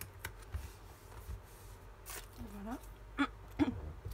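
Paper being handled and pressed down on a craft table, with a few light clicks. In the second half come short non-word vocal noises from the crafter: one drawn-out sound, then two sharp ones about half a second apart, which she then excuses with "pardon".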